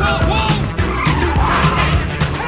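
Music with a steady drum beat, with a car's tyres squealing over it.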